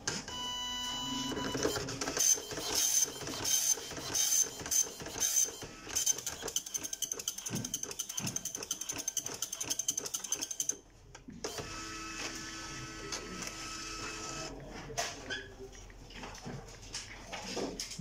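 Epson LQ-310 24-pin dot-matrix printer running its power-on self-test: a short motor whir as it starts up, then the print head buzzing out line after line in a rapid rhythm as the carriage shuttles back and forth. The printing stops briefly about eleven seconds in and gives way to a steadier motor whine.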